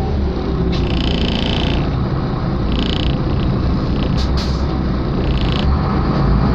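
Steady low rumble of a moving road vehicle heard from inside it, with three short high-pitched sounds over the top: about one second in, about three seconds in, and near the end.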